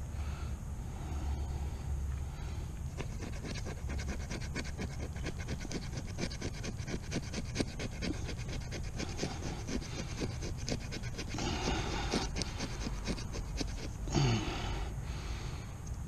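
Knife blade scraping a fatwood stick in quick repeated strokes, shaving off resin-rich dust for fire tinder. A short throat sound comes near the end.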